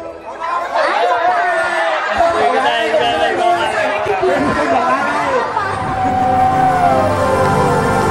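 Several people talking and calling out over one another in excited chatter, then music comes back in about six seconds in.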